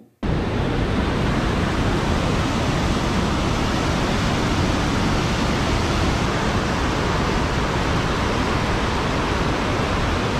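Upper Falls of the Yellowstone River: a loud, steady rush of falling, churning water with no change in level, beginning suddenly just after the start.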